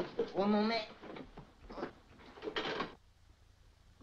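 A man's wordless vocal exclamation in the first second, followed by a few short scuffling noises and a quiet last second.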